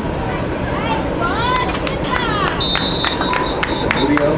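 Men shouting on the sideline, then a referee's whistle blowing one steady, high blast from a little past halfway to the end, with a few sharp knocks over it. The whistle marks the play being blown dead after the tackle.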